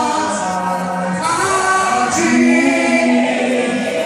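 A worship congregation singing a gospel song together, many voices holding long drawn-out notes.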